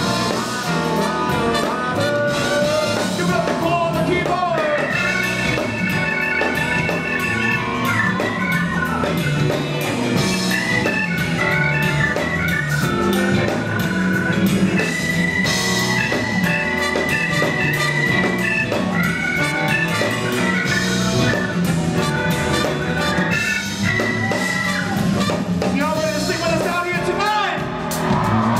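Live band playing, with an organ-voiced keyboard solo over bass and drums: fast trilled runs, and a long held note about midway.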